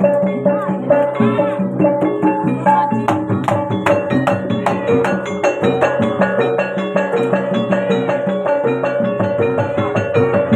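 Javanese gamelan accompaniment for a jathilan horse-trance dance: loud, continuous rhythmic music of regular drum strokes and ringing metallophone and gong-chime notes.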